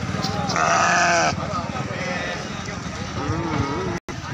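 A goat bleats once loudly, a wavering call starting about half a second in and lasting under a second; men's voices follow near the end.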